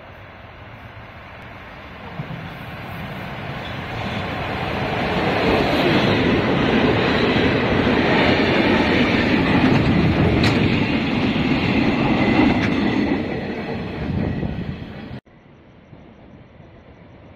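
Freight train led by two E200-series electric locomotives passing through a station at speed. The rumble of locomotives and wagons builds as it approaches and is loudest while it passes, with wheels clattering over the rails. It cuts off suddenly near the end.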